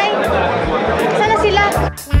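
Many people talking at once in a large indoor room, a dense babble of voices over background music with a steady bass line; the chatter cuts off suddenly near the end, leaving the music.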